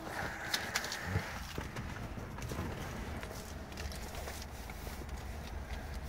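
A steady low hum with a faint haze of noise, and a few light clicks and rustles in the first second or so as a handheld phone is moved around inside a car's cabin.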